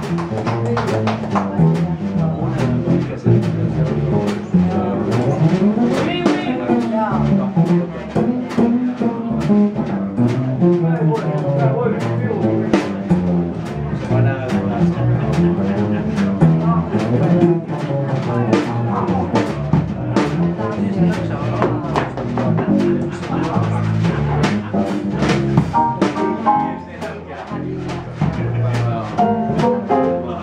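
Live small-group jazz: a drum kit keeping time with steady cymbal strokes under a stepping double bass line, with a clarinet carrying the melody above them.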